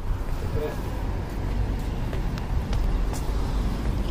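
Steady street noise: a low rumble of road traffic.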